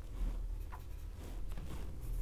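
Graphite pencil scratching lightly on paper in short, irregular strokes while a first rough sketch is drawn, over a low steady hum.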